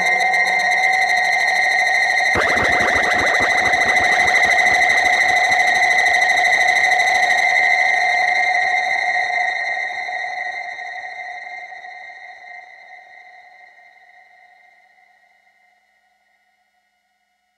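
Ciat-Lonbarde Tetrax analog synthesizer through a Chase Bliss Mood Mk II looper/effects pedal: steady high electronic tones, joined about two seconds in by a dense rapid clicking, grainy texture, then the whole sound fades out over the last several seconds.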